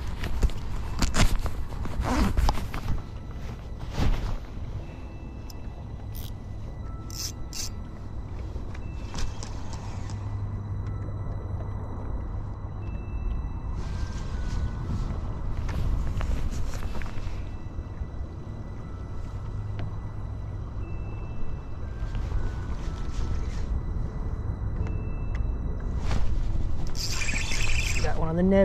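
Steady low rumble of an open-water boat setting, with a short, high electronic beep every few seconds and a few scraping, clicking handling noises early on. A hissier rush of noise comes in near the end.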